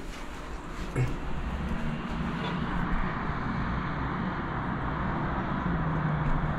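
Steady hum of distant city traffic heard from high up through an open window, with one faint click about a second in.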